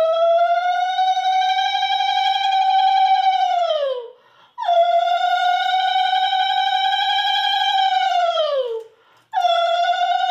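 Conch shell (shankha) blown in long, steady notes: two full blasts of about four seconds, each sliding down in pitch as it ends, and a third starting near the end.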